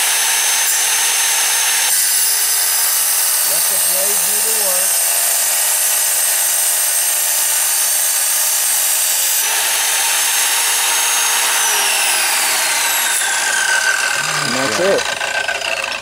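MK-270 wet tile saw running with water on its diamond blade as it cuts through a tile, a steady high whine whose texture changes as the blade bites in. Near the end the saw is switched off and its whine falls as the blade winds down.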